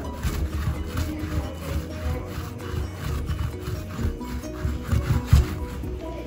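A hand rolling foam modelling clay back and forth on a wooden tabletop, a rubbing sound of repeated strokes, over background music.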